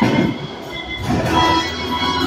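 Bowling balls rolling along the lanes and through the ball return, a low rolling rumble, over background music.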